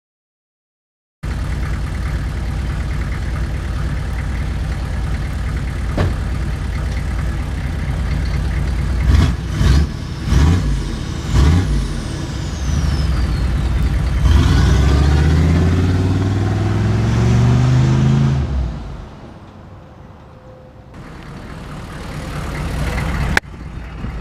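1995 Chevrolet K1500 pickup running on a freshly straight-piped exhaust with a Cherry Bomb glasspack and no catalytic converter, starting after about a second of silence. It idles steadily, is blipped in a few quick revs about nine to twelve seconds in, then revved in one longer rising pull, and drops back to a quieter idle near the end.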